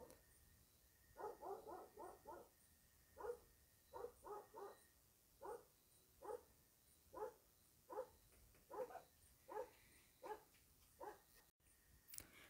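A dog barking faintly in the background: short barks, some in quick runs of three to five.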